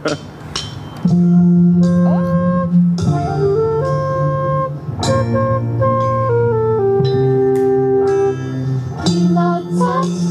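A children's band opens a song with its horn section (saxophones and trumpet) playing long held chords that change every second or two. A livelier part comes in near the end.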